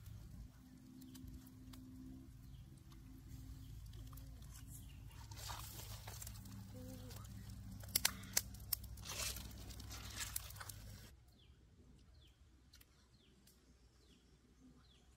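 Wood fire crackling and popping under salt-crusted fish roasting on a stick rack, with a few sharp pops around eight to nine seconds in. It drops away suddenly near the end, leaving faint bird chirps.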